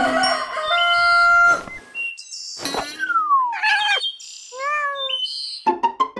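A short chime-like musical phrase, then birds chirping and a rooster crowing, a cartoon wake-up-in-the-morning sound effect.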